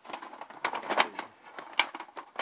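Metal and polymer rifle magazines clacking against each other and the plastic tub as a hand rummages through a pile of them: a quick run of sharp clicks and knocks, loudest about a second in and again near the end.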